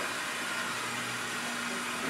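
Steady background hiss with a faint low hum and no distinct events; no hammer strikes.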